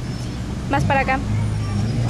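Low, steady noise of road traffic, growing stronger about halfway through, with a short burst of a person's voice about a second in.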